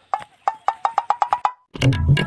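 An added comedy sound effect: about a dozen sharp, woody knocks at one pitch, coming faster and faster for about a second and a half. Near the end, background music with tabla and percussion starts.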